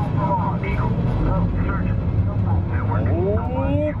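Mission: Space simulator ride's launch soundtrack in the capsule: a steady low rumble with voices over it, and a rising whine about three seconds in.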